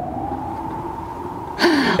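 An edited-in electronic sound effect: a tone that rises and then holds steady over a low rumble. About a second and a half in, a short noisy burst with a falling pitch cuts across it.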